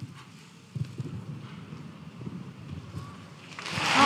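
Hooves of a cantering show-jumping horse thudding softly and irregularly on the arena surface, then an indoor crowd breaking into loud cheering near the end as the last fence is cleared, marking a clear round.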